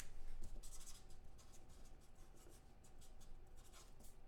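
Faint scratching and rubbing at a desk, like a pen or paper being worked by hand. It is thickest in about the first second and a half, then thins to light rustling.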